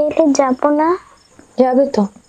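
Speech: a girl's high voice asks a question, then a short reply follows near the end. Faint, steady high-pitched chirping runs underneath.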